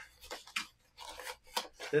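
Small cardboard product box and its packing being handled and rummaged through: a run of short, irregular scrapes, rustles and light taps.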